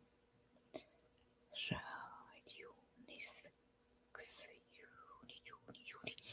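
Faint whispered speech in short snatches, with a couple of soft clicks in the first two seconds.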